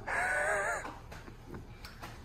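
Steel door hinge creaking as the door swings open: one short, wavering squeal of under a second.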